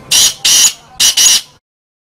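Black francolin (kala teetar) calling: a loud, harsh phrase of four notes in two quick pairs, ending about one and a half seconds in.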